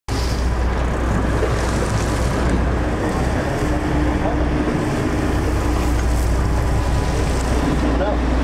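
Sportfishing boat under way at sea: a steady low engine rumble under the rush of water along the hull, with wind buffeting the microphone.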